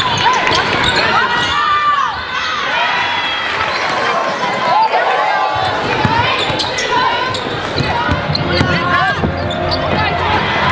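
Live basketball game sound in a gym: the ball bouncing on the court, sneakers squeaking in short chirps, and players' and spectators' voices throughout.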